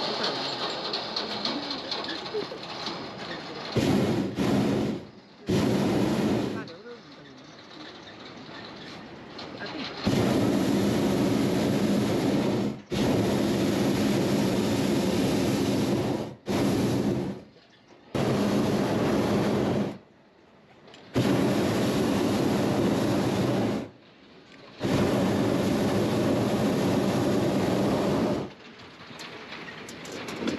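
Hot air balloon propane burner fired in a series of about eight blasts, each one to three and a half seconds long, cutting on and off sharply. The pilot is working the burner valve to control the descent toward the landing spot.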